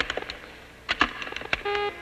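Keystrokes clicking on a computer keyboard as words are typed in, first sparse and then in a quick run. Near the end comes a short electronic beep, a steady tone about a quarter of a second long.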